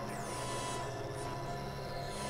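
Experimental electronic drone music from synthesizers: a low steady drone and thin held high tones, with a high-pitched sweep falling in pitch just after the start.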